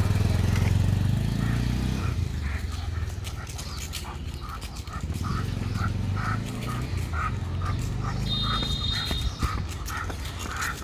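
Low rumble of a nearby motorcycle engine, strongest in the first two seconds and swelling again midway. Over it come soft, regular footsteps on asphalt, about two a second, as the dog is walked on its leash. A brief high tone sounds near the end.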